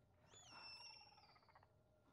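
Faint, high-pitched animal-like squeal from a horror film soundtrack: it starts with a short drop in pitch, holds a lower note, and fades out over about a second and a half.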